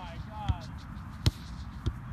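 Soccer balls being kicked: three sharp thuds, the loudest about halfway through, with players calling out faintly near the start.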